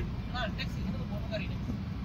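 Steady low rumble of a car's engine and road noise heard inside the cabin, with faint snatches of people talking.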